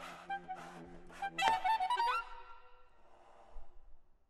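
Saxophone quartet (soprano, alto, tenor and baritone saxophones) playing contemporary music: a held low chord under rhythmic breathy air noises about twice a second. About one and a half seconds in, a loud high chord with a sharp attack and an upward slide, which then fades away.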